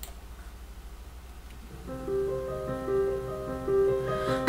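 Instrumental backing track starting to play back: after a faint low hum, sustained keyboard chords come in about two seconds in.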